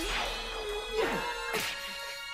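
Anime sword-fight soundtrack: blades clashing and swishing, with quick strokes about a second in and again near the end, over background music with a held note.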